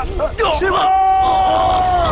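Men shouting, then one man's long held scream of pain from about halfway in.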